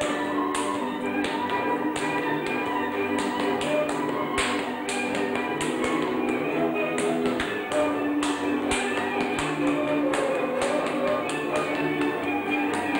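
Transylvanian folk dance music, with many sharp taps from the dancer's boots striking the floor, irregular and often in quick runs, over it.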